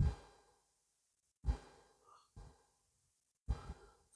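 A man breathing between sentences: four short breaths, each stopping abruptly into dead silence.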